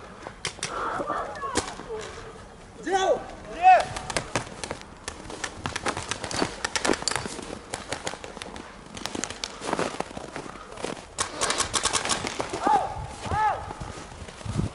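Paintball markers firing in scattered groups of sharp shots, ending in a fast run of about ten shots a second near the end, with short shouts from players.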